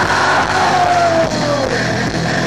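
Live rock band playing loud with electric guitars and a drum kit, one held note sliding down in pitch over the second half.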